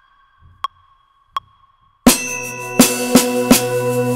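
Metronome clicking about once every 0.7 s as a count-in, then about halfway through a drum kit comes in with evenly spaced strokes, about three a second, over a steady low tone.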